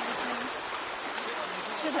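Steady rush of a shallow, fast-running river flowing around the legs of people wading across it, with faint voices over it and a short spoken word at the end.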